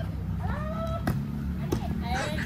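Volleyball being struck during a rally: two sharp slaps, a little past one second in and near the end, with one drawn-out high call about half a second in.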